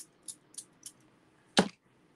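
A single sharp knock about one and a half seconds in, with a few faint small ticks before it: a clear acrylic stamp block being handled against the craft desk.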